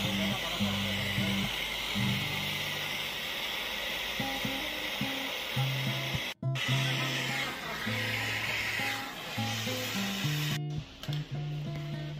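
Steady hiss of a gas brazing torch flame heating a copper refrigerant pipe joint, under background music with a stepping bass line. The sound drops out for an instant twice, about six and a half seconds in and again near ten and a half.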